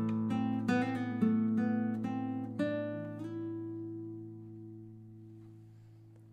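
Classical guitar playing the last few plucked notes and chords of the song's outro. About two and a half seconds in, a final chord is left to ring and slowly dies away.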